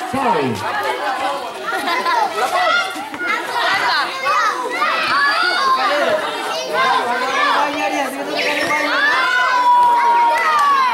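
Crowd of spectators, many of them children, shouting and chattering over one another, many voices at once.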